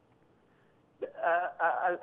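A pause of near silence, then about a second in a man starts speaking over a telephone line, his voice thin and cut off above the speech range.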